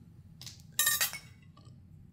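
Tableware clinking once about a second in, a sharp hit with a short ring.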